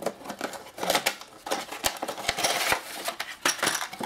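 A cardboard miniatures kit box being opened and its contents handled: rustling with a run of light clicks and clatters of hard plastic sprues, busiest around the middle.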